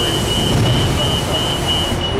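Steady city traffic rumble with a low engine drone, with no single event standing out.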